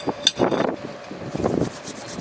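Wind buffeting the microphone in uneven gusts, with a short sharp click about a quarter of a second in.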